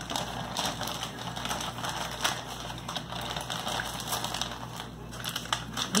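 Plastic snack packaging being handled: irregular crinkling and crackling with small clicks.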